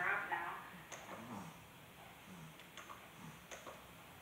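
Laptop keys clicking a few times, spaced out, over quiet room tone. A short voice is heard at the very start, and brief faint vocal sounds come in between the clicks.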